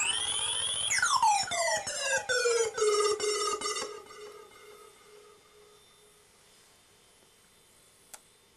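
Electronic tones from a handmade synthesizer box played by a hand on its lid contacts. A pitch slides up to a steady high tone, then sweeps quickly down with a stuttering pulse and settles into a low tone that fades out about five seconds in.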